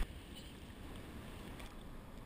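Faint, steady low rush of ocean surf and wind, muffled as heard from a waterproof action camera riding at water level.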